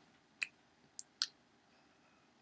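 Three faint, short clicks: one near the start, then two close together about a second in.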